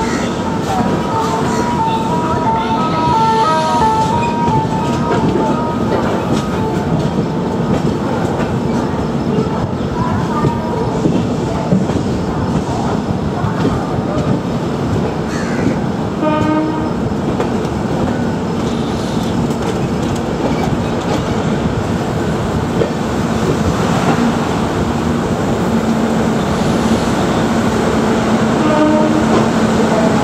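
Steady running noise of an express train's passenger coach, heard from inside the coach: continuous rolling rumble of wheels on rail. In the first few seconds there is a short series of stepping tones.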